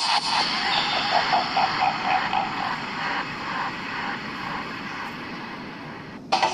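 Riding noise from a Royal Enfield Thunderbird motorcycle on the move: steady wind rush on the camera's microphone with engine and road noise mixed in, easing off slightly toward the end.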